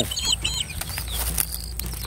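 Small birds chirping in quick, high, short calls in the first half-second, with one more brief call a little later, over a few scattered soft clicks and rustles.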